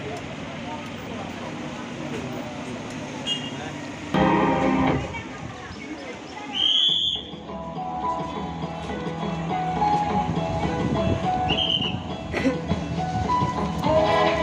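Busy town-street ambience: crowd chatter and traffic, with a loud burst about four seconds in and two short shrill whistle blasts about seven and eleven seconds in. Music comes in during the second half and grows louder toward the end.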